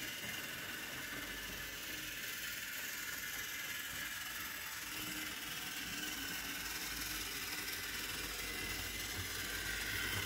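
Model trains running on the layout's metal track: a steady mechanical whir of small electric motors and wheels on rail.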